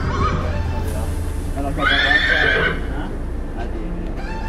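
A horse whinnies once, a call about a second long about two seconds in, over a steady low hum.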